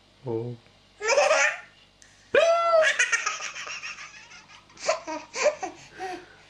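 Baby laughing in bursts: a short burst about a second in, then a long, loud fit of laughter from a little over two seconds in that trails off, and short laughs again near the end.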